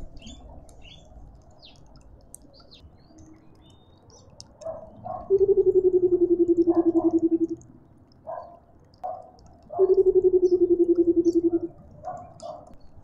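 Burchell's coucal giving its bubbling call: two long runs of rapid low hoots, each about two seconds long and sinking slightly in pitch, the first about five seconds in and the second near the end. Shorter, higher calls come between them, and small birds chirp faintly.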